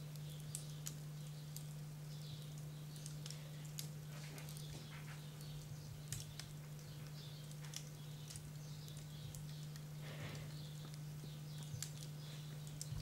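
Faint steady low hum with light irregular clicks and ticks scattered throughout.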